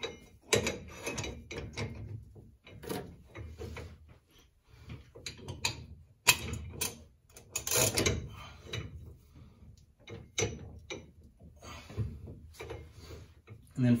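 Ratchet and metal tool clicking and clanking in short, irregular bursts as an inner tie rod tool is turned, threading the inner tie rod into the steering rack.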